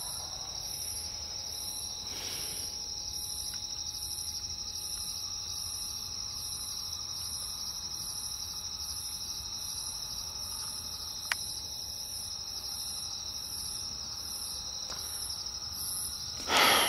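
Night insects, crickets, chirping: a steady high trill with a higher chirp repeating about once a second. A single sharp click sounds about eleven seconds in.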